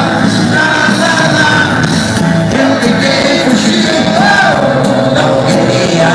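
Rock band playing live in a large hall: electric guitar, bass and drums with a singing voice, loud and steady, recorded from among the audience.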